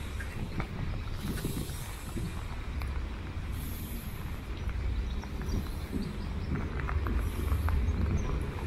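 Steady low rumble of wind buffeting the microphone, with scattered light clicks and knocks. A steam locomotive approaches slowly in the distance, with faint hissing now and then.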